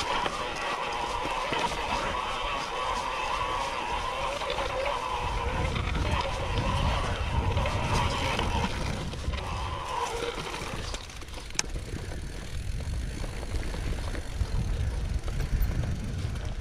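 Mountain bike rolling downhill over a grassy dirt trail: tyre noise and rattling from the bike, with a low rumbling of rough ground or wind on the microphone from about five seconds in and an occasional sharp click.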